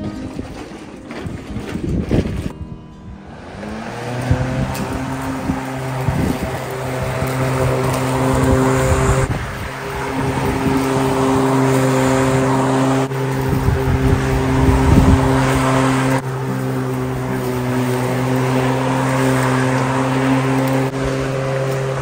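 Electric lawnmower motor spinning up about three seconds in, then running with a steady hum as it cuts the grass, with wind gusting on the microphone.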